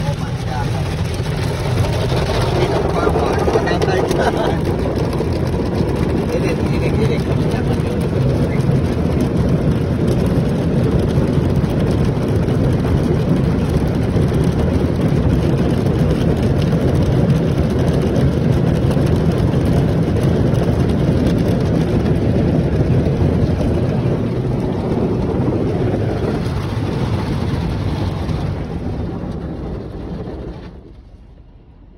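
Automatic car wash foam brushes and cloth strips scrubbing and slapping against the car's windshield and body, heard from inside the car: a loud, steady churning wash that fades out near the end.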